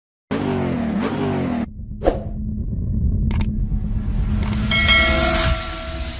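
Car engine sound effect in a channel intro. The engine revs up and down in the first second and a half, then settles into a steady low rumble, with a couple of sharp clicks and a rising whoosh near the end.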